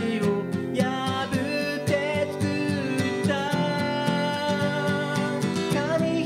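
A man singing a ballad while strumming chords on a steel-string acoustic guitar, the vocal melody gliding over steady strums.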